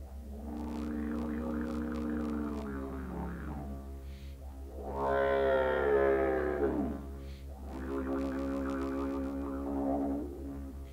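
Wooden didgeridoo played solo: a steady low drone with three long, wavering calls laid over it, the loudest in the middle sliding down in pitch as it ends.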